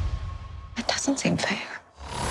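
Film music dies away, then a brief whispered voice, a handful of short breathy sounds, comes in about three-quarters of a second in. It breaks off into a moment of near silence just before the end.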